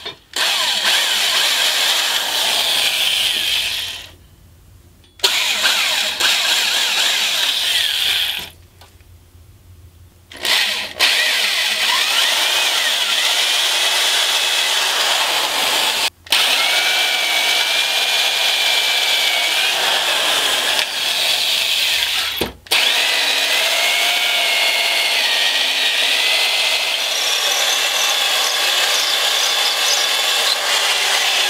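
Corded electric drill with a long quarter-inch bit boring a deep hole into a block of ash wood, running loud and steady under load. It stops for about a second four seconds in and for about two seconds near nine seconds, with two very brief breaks later.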